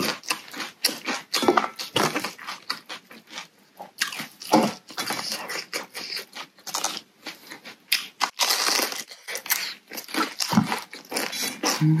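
Close-miked chewing of raw cabbage leaf and noodle soup: many crisp crunches and wet mouth clicks in an uneven run.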